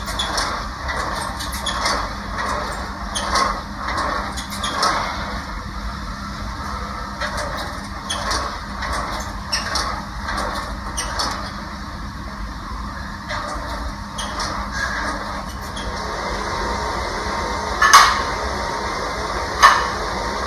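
Scuffling, rubbing and squeaks of bodies moving against each other and a gym mat during grappling, over a steady hum, with two sharp loud slaps near the end.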